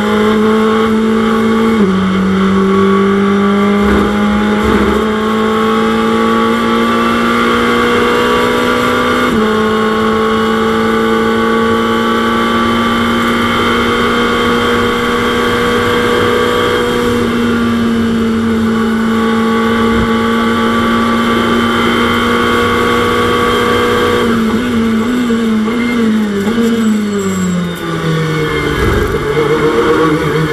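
In-car sound of a Ferrari 488 GT3's twin-turbo V8 running hard at racing speed. Its pitch is held high and climbs slowly with a couple of gear changes. Near the end it steps down several times in quick succession as the car slows, then picks up again.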